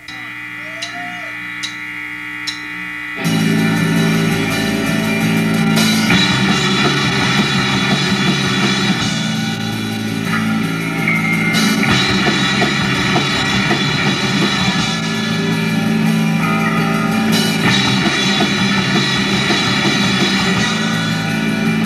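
Live indie rock band: electric guitar and bass hold low notes under three evenly spaced sharp clicks. Then, about three seconds in, the full band with drum kit comes in loud and plays on with no singing.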